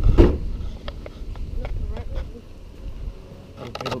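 Footsteps on pavement with scattered light clicks, over a low rumble of wind buffeting a body-worn camera microphone.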